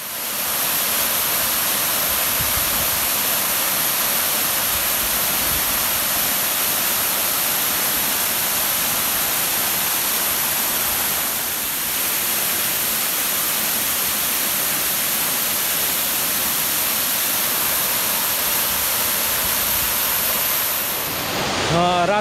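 Waterfall: a steady, loud rush of water falling onto rocks, dipping slightly for a moment about halfway through.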